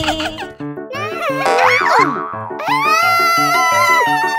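Children's cartoon background music with a steady bouncing beat. Cartoon sound effects glide up and down in pitch around the middle, and a long held note comes in near three seconds.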